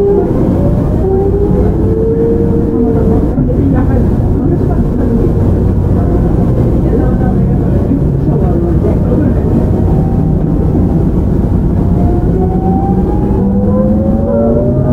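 Running sound of a JR Shikoku 7000 series electric train with its original Hitachi GTO-VVVF inverter: the inverter and traction-motor whine rises in pitch over the first few seconds and again near the end as the train picks up speed, over steady wheel-and-rail rumble.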